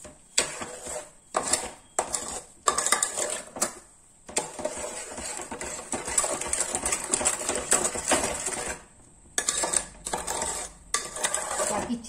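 A spoon stirring thick mango pulp mixed with sugar and spices in a metal pot, scraping against the pot's sides and bottom. Separate strokes come first, then about four seconds after the start a continuous scraping stir, broken by a brief pause near the end.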